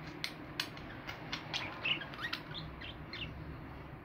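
Budgerigars chattering: a quick run of short clicks and chirps mixed with little rising and falling squeaks. They stop about three seconds in, and a steady low hum runs underneath.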